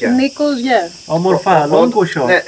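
People talking, with a steady high-pitched chorus of insects buzzing behind the voices.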